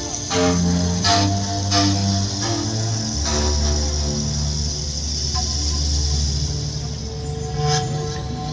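Amplified New Age-style 'Indian' (Native American) street music playing through a busker's loudspeakers: long held bass notes under a soft high wash, with a few sharp bright strikes in the first few seconds and one more near the end.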